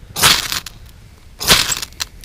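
Magnesium fire steel rod scraped hard with a striker to throw sparks onto fat-wood shavings: two rasping strokes, the first just after the start and the second about a second and a quarter later.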